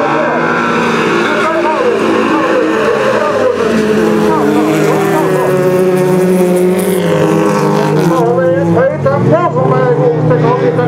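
Several bilcross stock cars racing on a gravel track, their engines held at high revs, rising and falling in pitch as they accelerate and lift. Loudspeaker commentary is mixed in, more prominent near the end.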